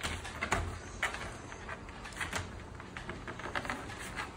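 Scattered light clicks and rustles from a dog shifting and lying down in a wire crate.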